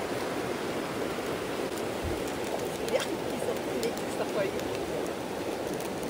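Steady rushing of a river flowing over rocks, with a few faint clicks about halfway through.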